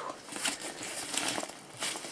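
Synthetic hi-vis work clothing fabric rustling and crinkling as a hand grips and moves it, in irregular bursts.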